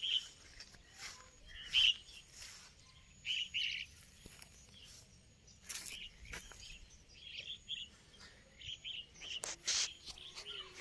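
Small birds chirping in short, repeated bursts, with a few brief rustles or knocks among them.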